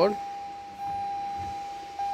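A steady electronic tone at one constant pitch, held without a break, which grows louder just under a second in.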